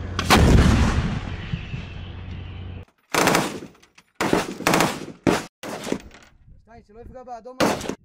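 A self-propelled howitzer fires once, its blast rolling away in a long fading rumble for about two and a half seconds. Then, after a sudden cut, come several short bursts of machine-gun fire, with one more burst near the end.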